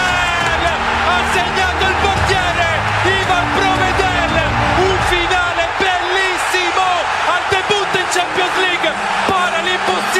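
Excited, loud shouting from a football commentator calling a goal, over background music.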